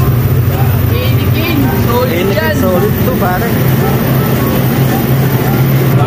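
Steady low hum of a walk-in beer cooler's refrigeration fans, with indistinct voices talking underneath.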